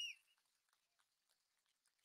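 Near silence, with one brief high chirp right at the start.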